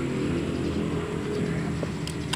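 Soft background music with sustained low notes, over which a screwdriver faintly turns a screw in the face plate of an old sewing machine, tightening it, with a small click near the end.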